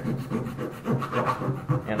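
Multi-tool saw blade cutting into the plastic barrel of a pair of binoculars with repeated back-and-forth rasping strokes. The blade is down to the point where it hits something hard, which is taken for the small ring around the lens.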